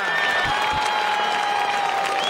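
Live concert audience applauding, with a steady high tone held through most of it.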